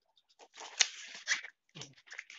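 Coarse ijuk (sugar palm) fibres rustling and crackling as they are handled and pressed into a mould wet with epoxy resin: about a second of scratchy noise with a couple of sharper clicks.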